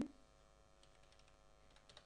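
Faint keystrokes on a computer keyboard, a few soft scattered clicks, over a faint steady hum.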